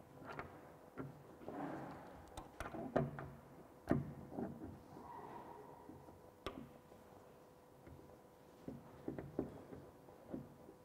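Steel hand tools clicking, scraping and knocking on a wall-mounted support bolt as it is gripped and tightened with pliers and an adjustable spanner. The knocks are scattered and irregular, the loudest about three and four seconds in, over a faint steady hum.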